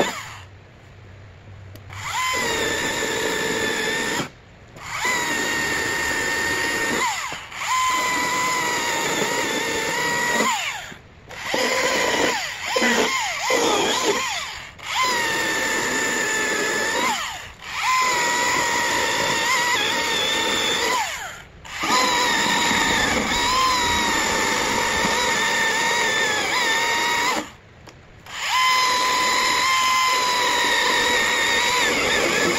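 Battery-electric Husqvarna top-handle chainsaw cutting ash limbs: a steady high motor whine in a series of cutting runs, each a few seconds long, stopping dead in short pauses between them with no idle.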